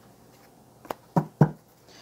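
Tarot deck being handled and tapped: a light click about a second in, then two knocks in quick succession.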